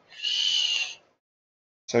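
A single steady high tone with a hiss over it, lasting about a second, after which the sound cuts out completely.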